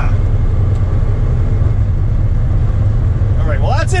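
The car's LQ4 6.0-litre V8 engine is running steadily at cruise, heard from inside the cabin as a constant low drone with no revving.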